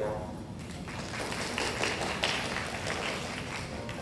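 Audience applauding, with some voices mixed in.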